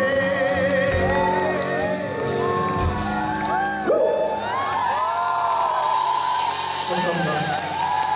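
A live band and male singer performing a song on stage, with audience members whooping and screaming over the music; the crowd noise swells suddenly about four seconds in.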